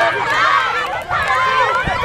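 A group of children shouting and laughing, many high voices overlapping at once.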